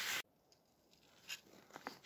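Steady outdoor hiss that cuts off abruptly about a quarter second in, leaving near silence broken only by a couple of faint clicks.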